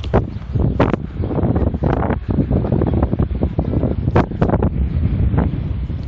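Wind buffeting a phone's microphone: a loud, uneven low rumble with gusty spikes.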